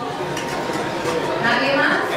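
Indistinct voices talking in a room; one voice becomes clearer near the end.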